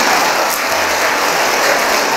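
A large audience applauding, with dense, steady clapping.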